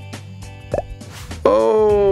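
Background music for an animation, with a short cartoon plop sound effect about three-quarters of a second in, then a long held pitched note near the end.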